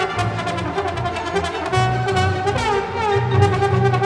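Solo trombone playing with a symphony orchestra in a trombone concerto, with sliding pitch glides in the second half.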